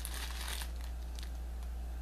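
Clear plastic zip-top bag of loose pipe tobacco crinkling as it is handled, densest in the first half-second or so, then a few light crackles.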